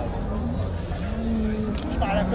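Faint men's voices in the background over a low, steady rumble.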